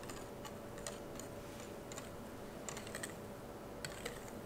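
Wire whisk beating a thin egg mixture in a glass bowl: irregular light clicks of the wires against the glass, several a second.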